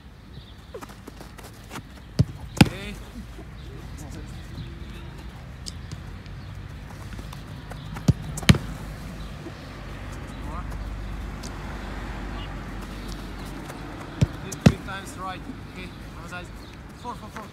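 A football kicked three times, about six seconds apart, each kick followed a fraction of a second later by a louder smack as the ball hits the goalkeeper's gloves.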